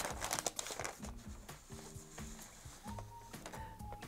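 Quiet rustle of a paper sleeve as a card-stock portrait is slid out of it, the crinkling mostly in the first second, over soft background music.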